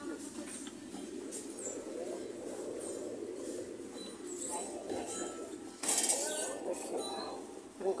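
Supermarket background: a steady murmur of store noise and faint voices, with a sharp clink about six seconds in.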